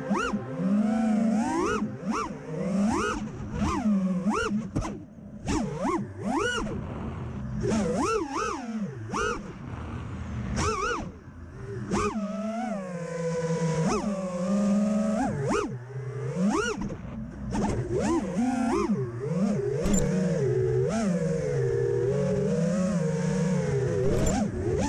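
Five-inch FPV freestyle quadcopter's brushless motors and propellers whining, the pitch swinging sharply up and down about once a second as the throttle is punched and chopped.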